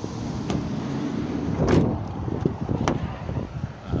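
Handling noise and footsteps around a MAN TGE van as its passenger cab door is opened, with one loud clunk a little under two seconds in and a few sharper clicks.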